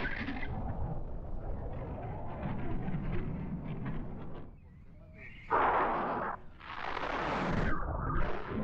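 Wind buffeting the camera microphone during a tandem paraglider flight: a constant rumble with rushing noise, which drops away for about a second halfway through, then returns as two loud gusts near the end.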